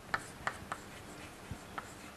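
Chalk writing on a chalkboard: a faint run of short, irregular taps and scratches as the letters are written.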